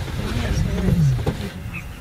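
Lion growling: a low rumble with a few short downward-sliding groans.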